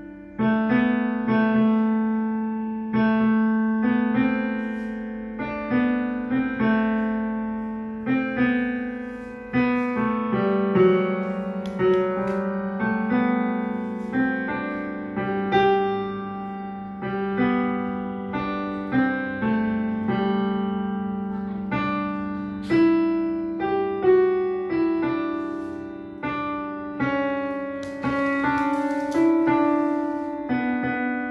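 A digital piano played at a slow pace: single melody notes and chords struck over a held low accompaniment, each note left to ring and fade before the next.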